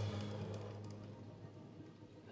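Guitars' last chord with a low note ringing out and fading steadily away, with no new notes played.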